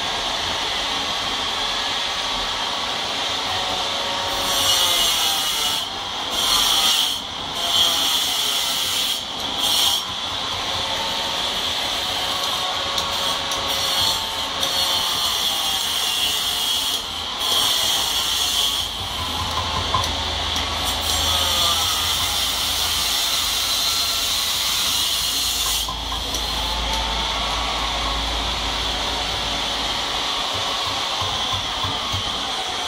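A hand tool rasping and scraping over a white stone statue, a continuous gritty rubbing with several louder strokes in the first ten seconds.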